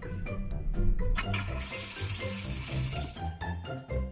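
Upbeat background music, with water rushing from a sink faucet for about two seconds in the middle.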